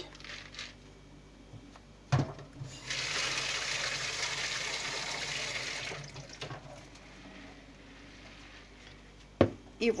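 Water running from a tap for about three seconds into a plastic bowl of dry red beans, covering them for soaking. A single sharp knock comes about two seconds in, just before the water starts.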